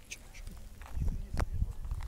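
Wind buffeting the microphone in low, gusty rumbles, with a sharp knock partway through as the phone is moved.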